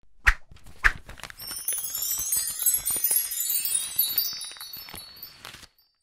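Chime sound effect on a graphic transition: two sharp hits, then a glittering cascade of high tinkling chime tones that fades away shortly before the end.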